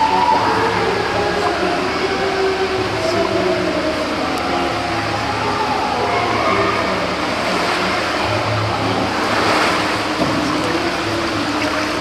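Voices singing a slow hymn in long held notes, echoing around a tiled pool hall, with a splash of water about nine and a half seconds in as the man is immersed in baptism.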